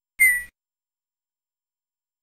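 Tux Paint's interface sound effect: a single short electronic blip with a slightly falling tone, lasting about a third of a second. It plays as the stamp size control is clicked.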